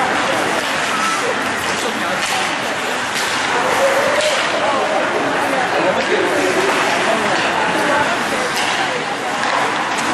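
Ice rink game sound: spectators talking amid a steady hum of chatter, with skates scraping and scattered sharp clacks of sticks and puck on the ice.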